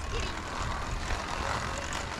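Steady rush of wind on the microphone, mixed with road noise from a moving electric trike.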